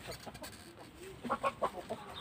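Broody hen in a nest box giving a few short, quiet clucks in the second half, disturbed by a hand reaching under her to the eggs she is sitting on.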